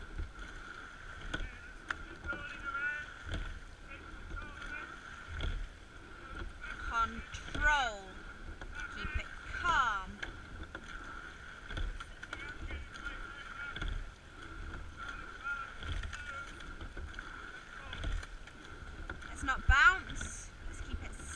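A sweep-oar rowing boat under way at steady stroke, with a low clunk about every two seconds as the crew takes each stroke. Short squeaks come from the boat's moving parts, and a steady faint high whine runs underneath.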